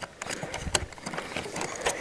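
Small plastic toy figure being pushed and fitted into the cockpit of a plastic toy rocket: a run of small, irregular plastic clicks and scrapes.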